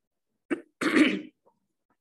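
A woman coughs: a short catch about half a second in, then a louder, harsher burst.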